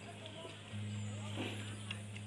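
A motor running with a steady low hum that gets louder a little under a second in, with faint voices in the background.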